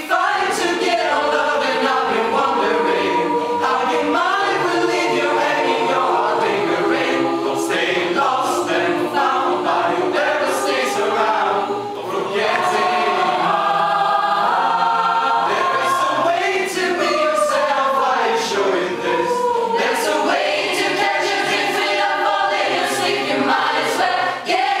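Mixed choir of women and men singing a cappella, several voice parts moving together in harmony, with crisp consonants on the words; the singing dips briefly about halfway through and carries straight on.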